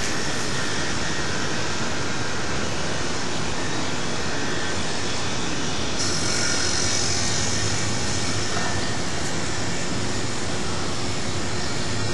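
A steady, even rushing noise with no breaks, which becomes brighter and hissier about six seconds in.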